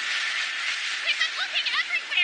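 Anime explosion sound effect: a dense, hissing blast that fades about a second in. It is followed by a voice crying out in short, high-pitched shouts with no words.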